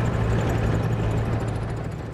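Engine of a lever-steered, skid-steer vehicle running steadily with a low drone, fading away near the end.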